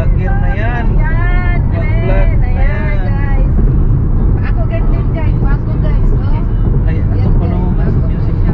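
Steady road and engine rumble inside a moving car's cabin, with voices talking and laughing over it, clearest in the first few seconds.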